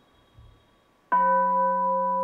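About a second of near silence, then a steady bell-like tone of several pitches at once starts suddenly and holds without fading.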